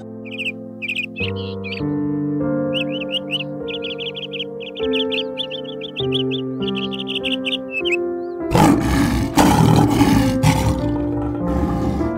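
Gentle piano music with a bird chirping over it in quick, short, high calls for the first eight seconds or so. Then a lion roars loudly and roughly in a few pulses for about three seconds near the end.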